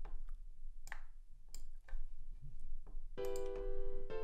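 A few sharp clicks, then about three seconds in a sampled piano chord sounds and holds: an F major chord from FL Studio's FL Keys piano plugin, previewed as it is stamped into the piano roll.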